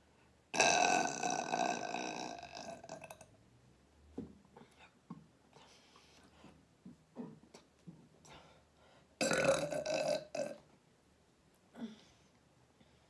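A woman burping loudly twice: one long burp lasting almost three seconds near the start, and a shorter one of about a second and a half about nine seconds in, with small faint sounds between.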